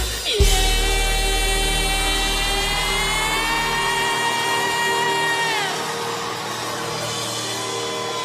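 Live band finishing a song with a last heavy drum-and-bass hit, then one long sung note held over a deep sustained bass. The bass fades out about halfway through, and the note slides down and stops a little later, leaving crowd noise.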